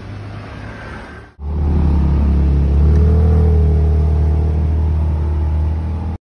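BMW M2 engine running at a moderate level for about a second and a half. After an abrupt cut it runs much louder and steadily as the car pulls away, with a slight rise in pitch about three seconds in.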